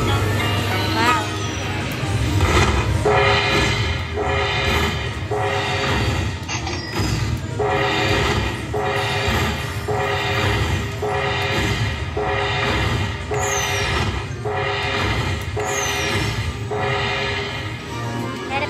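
Video slot machine playing its bonus-win celebration music: a rhythmic chiming pattern repeating about every two-thirds of a second, with a few falling whistle sweeps, as the bonus win tallies up. A steady low casino hum runs underneath.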